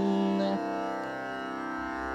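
Tanpura drone sounding steadily in a Carnatic setting, with the last of a held sung note that stops about half a second in, leaving the drone alone.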